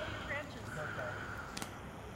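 Faint, indistinct voices talking, with a single sharp click about a second and a half in.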